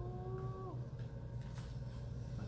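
A short hummed "mmm" from a person's voice, held on one pitch for under a second and dipping as it ends, over a steady low hum.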